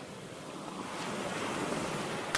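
Sea surf washing in with wind, a steady rush of noise that slowly swells.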